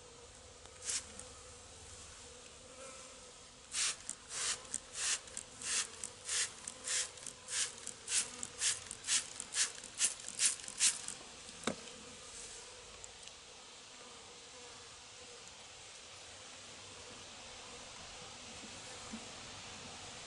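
A handheld plastic trigger spray bottle squirting in a quick run of about twenty short hisses, two or three a second, from about four to eleven seconds in, after a single squirt near the start. Honeybees buzz faintly around the open hive throughout.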